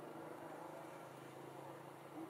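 Faint, steady low hum of a distant motor over outdoor background noise.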